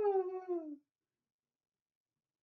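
A man's voice singing one high, held note with no accompaniment, sliding down in pitch and breaking off a little under a second in.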